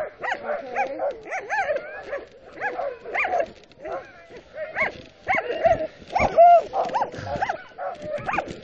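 Sled dogs in harness barking and yipping in quick, short calls that rise and fall in pitch, several a second, louder about two thirds of the way through.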